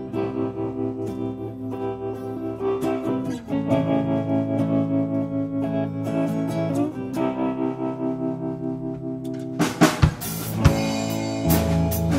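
Live rock band's instrumental intro: an electric guitar with effects plays ringing chords on its own, then the drum kit comes in with cymbal and drum hits about ten seconds in, the bass filling in underneath just after.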